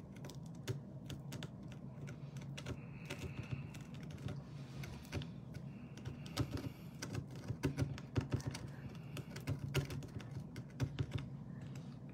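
Small, irregular clicks and scratches of a pointed tool picking at a brittle dalgona honeycomb sugar candy disc, carving along the stamped star shape. The clicks come more often in the second half.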